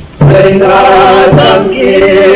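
Voices singing a chant-like song together over a low, regular beat that falls about once a second. The singing comes in loudly a fraction of a second in, after a brief lull.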